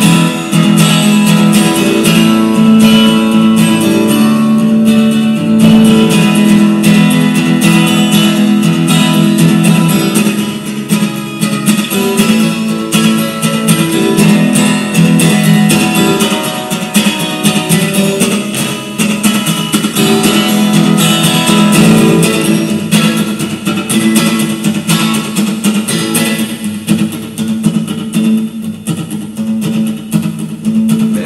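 Acoustic guitar strummed rapidly, steady chords ringing in a continuous rhythm, a little softer for a while about ten seconds in.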